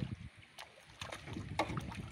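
A hooked fish splashing at the water's surface as it is pulled in on a bamboo pole's line, in a few short separate splashes.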